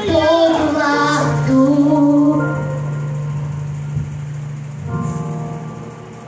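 A young girl singing a Portuguese gospel song into a microphone over instrumental accompaniment. Her sung phrase ends about two seconds in, and the accompaniment carries on with a long held low note.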